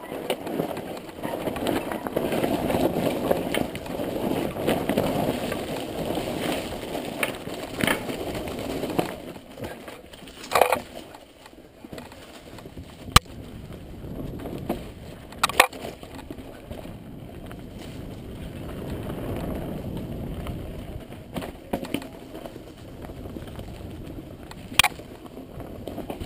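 Mountain bike rolling down rocky dirt singletrack: tyres crunching and rattling over loose stones, loudest in the first third. Several sharp knocks from the bike striking rocks come through the second half.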